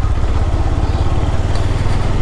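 GPX Demon GR165R's single-cylinder engine running steadily under light throttle as the motorcycle rides along at low speed.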